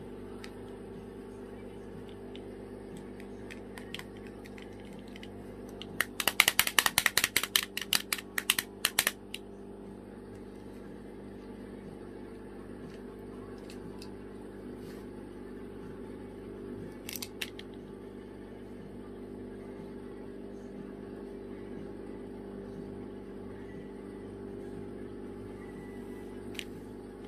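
Plastic hand-clapper toy clacking in a rapid burst of about twenty sharp clacks over three seconds as a cockatoo shakes it, with a shorter, fainter run of clacks later. A steady low hum runs underneath.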